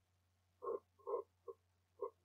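Short croaking animal calls: three in about a second, the first two loudest, over a faint steady low hum.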